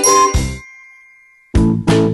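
The end of a TV station ident jingle: a final struck chord, then a chime ringing and fading away. About one and a half seconds in, a different piece of music with a steady beat starts abruptly.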